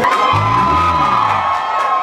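Live rock band with electric guitar holding a long sustained closing note at the end of a song, while the audience cheers and whoops.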